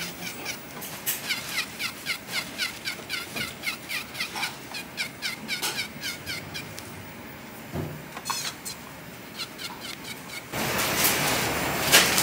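A quick run of high chirps, each falling in pitch, three or four a second, like a small bird's song. Near the end it gives way to a steady hiss.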